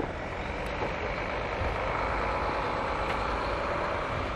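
Engine and road noise of a passing motor vehicle, a steady rumble that grows a little louder through the middle.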